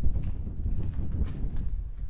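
Footsteps crunching irregularly across a rough concrete slab strewn with grit and construction debris, under a low rumble.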